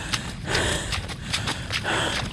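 Irregular footfalls on dry, dusty ground: sharp crunching clicks, with scuffs about half a second in and near the end.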